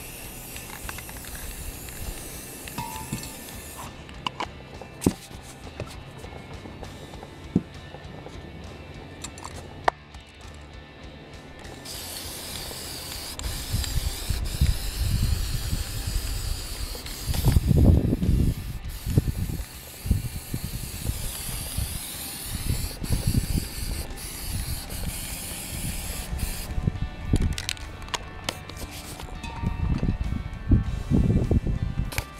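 Aerosol spray paint cans hissing as paint is sprayed in bursts, stronger in the second half, with a few sharp clicks.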